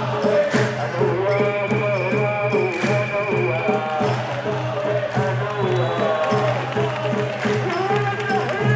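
Crowd of football-style fans singing a chant together, loud and continuous. A high wavering tone sounds for about two seconds early in the chant.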